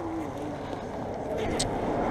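A car passing on the road close by, its tyre and engine noise growing steadily louder.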